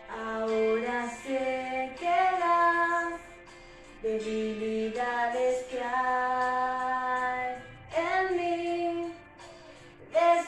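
A young woman singing solo in Spanish, a slow worship song, in three sung phrases with long held notes and short pauses between them.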